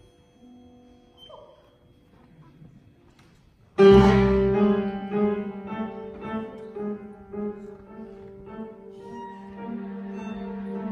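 String orchestra and piano playing classical music: soft, sparse string notes, then about four seconds in a sudden loud entry with a piano chord and the strings on a held low note, followed by repeated accented chords over the held strings.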